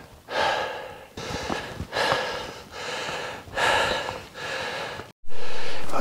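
A man's heavy breathing from exertion, one loud breath about every second, as he hikes up a steep slope. It cuts off abruptly near the end.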